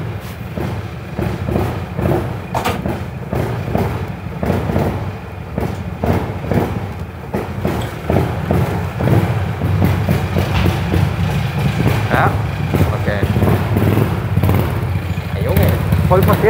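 9 PS go-kart engine running with a deep, steady rumble, getting louder from about nine seconds in.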